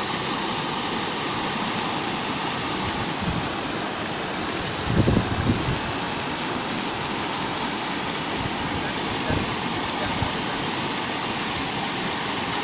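Brown floodwater of a river in spate pouring and foaming over a low concrete causeway: a steady, loud rushing noise, with a few brief low bumps about five seconds in.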